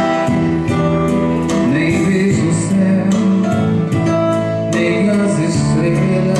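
Live music: a man singing into a microphone over an accompaniment with a steady beat.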